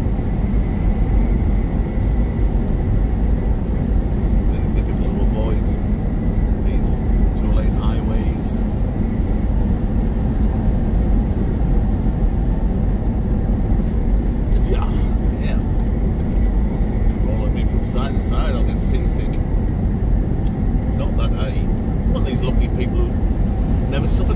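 Steady engine and road rumble heard from inside a semi-truck's cab while driving, with occasional faint clicks and rattles.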